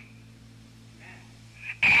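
A pause in a man's preaching, filled by a steady low hum. He starts speaking again near the end.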